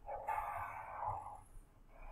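Black felt-tip marker stroking across paper as an ear outline is drawn: a scratchy rub of about a second and a half that then fades.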